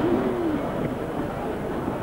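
Indistinct crowd chatter, many voices at once, with one voice briefly standing out just after the start.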